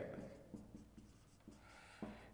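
Faint marker writing on a board: a few light taps and strokes, with a thin squeak of the marker tip near the end.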